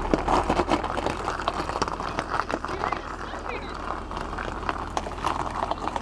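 Jeep Wrangler crawling over loose rock at low speed: many irregular crunches and clicks of tyres and gravel over a low, steady engine rumble.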